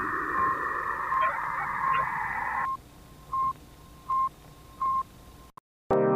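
Radio-like static hiss with a short electronic beep repeating about every three-quarters of a second. The static cuts off about two and a half seconds in, leaving three more beeps on their own, then a brief silence.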